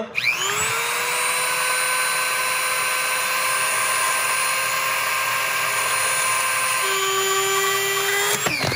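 Dremel rotary tool spinning up and grinding into a broken temperature sensor and snapped easy out in an engine's cylinder head: a steady high whine with a grinding hiss, stepping slightly lower in pitch near the end.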